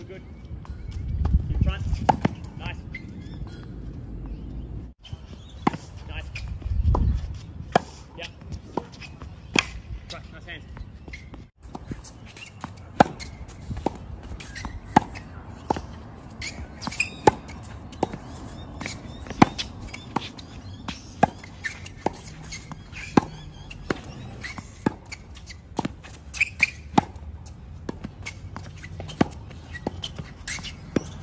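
Tennis balls struck with rackets in a fast volley rally on an outdoor hard court: a run of sharp pops about one to two a second, with ball bounces and shoe scuffs between them.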